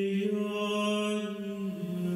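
A man singing Orthodox liturgical chant, holding one long drawn-out note that steps down in pitch near the end.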